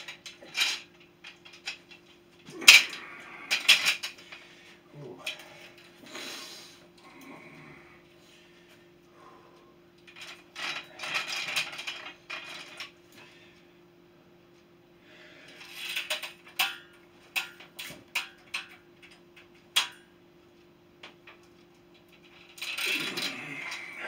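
Five-spring power twister being bent: steel springs and handles clinking and rattling in several bouts of effort, with quieter stretches between.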